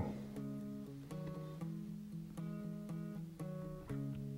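Soft background music: acoustic guitar picking, with its notes changing about every half second.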